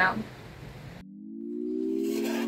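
A last spoken word, then faint room noise; about halfway through, the background cuts out and background music fades in as a held chord of steady low tones.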